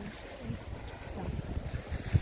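Wind buffeting the phone's microphone, a low rumble coming in uneven gusts.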